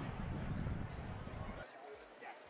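Low, buffeting rumble of wind on an outdoor microphone, with faint voices in the background; the rumble cuts off sharply near the end.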